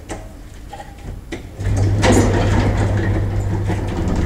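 Elevator running: a few light knocks, then about a second and a half in a loud, steady low hum with a rushing noise over it sets in and holds until near the end.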